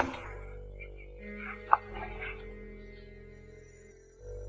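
Quiet, dark background film score of sustained low drone tones. A brief faint higher note sounds near the middle.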